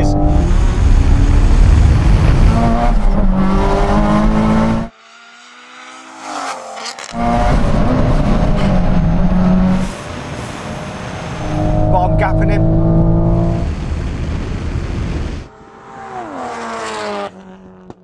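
A tuned Toyota Supra and a heavily modified Nissan Silvia S15 at full throttle in a quarter-mile drag race. The loud engine notes climb and drop through the gear changes, cut off abruptly twice by edits. In the quieter stretches an engine note falls away.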